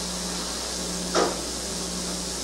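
Steady hiss and low hum of an old film soundtrack in a pause, broken once about a second in by a short, sharp sound.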